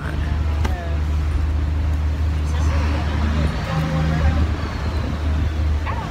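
A small passenger boat's engine running with a steady low drone as the boat gets under way, no longer cutting out.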